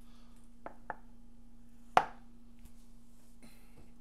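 Metal muffin tin of baked rolls set down on a wooden cutting board: two light clicks, then one sharp knock with a brief metallic ring about halfway through. A steady low hum runs underneath.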